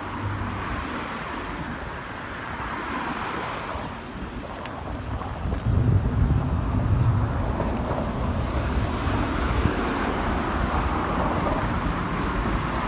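Outdoor street noise: traffic rumble mixed with wind buffeting the microphone, getting louder about halfway through.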